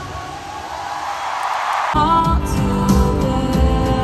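Live stadium concert sound, recorded on a phone. The music breaks off and a rising rush of noise fills the gap, then soft, slow music begins about halfway through.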